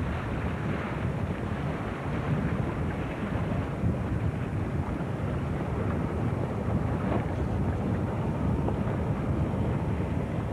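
Steady low rumble of a tow boat's motor running, mixed with wind buffeting the camcorder microphone.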